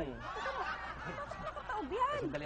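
A person's soft laughter, a brief quiet snicker.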